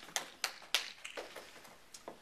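Handling noise from a handheld microphone being passed from one person's hand to another's: a quick run of sharp knocks and clicks in the first second, then softer taps and rubs.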